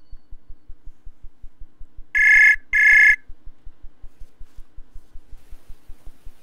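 Outgoing call ringing tone from a computer's web-calling app: two short rings in quick succession, about two seconds in, while the call to the student is placed. A faint low pulsing, about five a second, runs underneath throughout.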